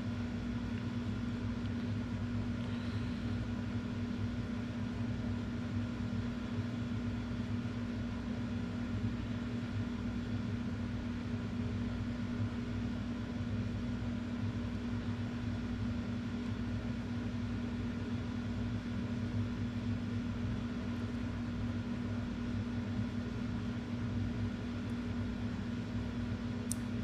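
A steady mechanical hum: a low, even drone with a faint hiss, unchanging throughout.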